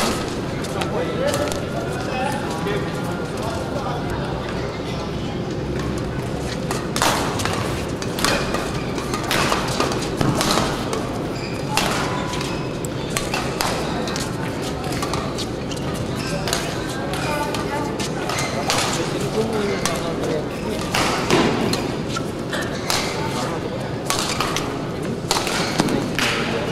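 Badminton rackets striking a shuttlecock in rallies: sharp, irregular hits in an echoing hall, over steady background chatter.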